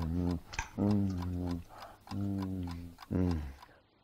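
A clock ticking, with a man's long 'mmm' hums of enjoyment while eating, about one a second.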